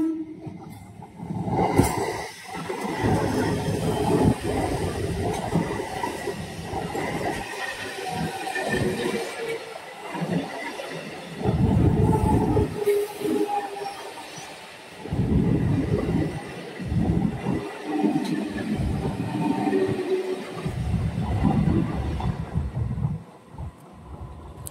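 Howrah local electric multiple-unit train running past a level crossing, its wheels clattering and rumbling unevenly over the rails. The sound dies away near the end as the last coaches clear.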